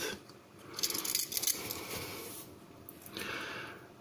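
Faint handling noise of an opened pocket knife being turned in the hands, with a few soft clicks about a second in.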